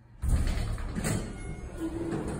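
Elevator car doors sliding open, starting abruptly a quarter second in with a loud rumbling, rattling run of the door panels.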